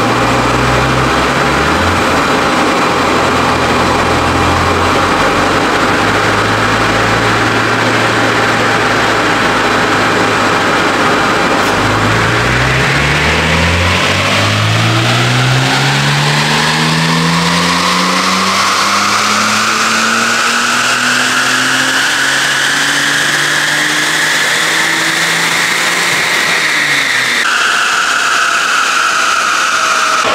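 Supercharged BMW M54 straight-six in an E46 325ti Compact running a fourth-gear power pull on a chassis dyno. The engine holds a steady note for the first part. About twelve seconds in, its note and a high supercharger whine climb together for some fifteen seconds, then it lifts off near the end and the revs fall.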